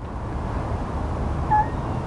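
Steady outdoor background hum with one brief, faint high call about one and a half seconds in.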